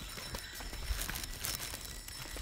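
Faint footsteps going down wet stone steps: a few soft knocks over a low rumble.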